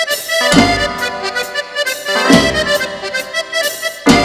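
Live cumbia band playing an instrumental passage: an accordion melody over deep bass notes that land about every two seconds.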